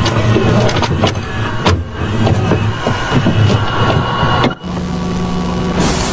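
VHS-style glitch sound effects: a low rumble broken by sharp clicks and crackles, a steady low hum after a brief dropout, then a rush of tape-static hiss near the end.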